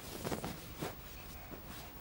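Soft rustling of a padded sleeping bag as a child crawls into it, with a couple of brief scuffs in the first second.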